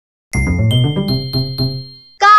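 A short chiming jingle: a quick run of bell-like notes over a steady high ring, starting about a third of a second in and fading out near the end.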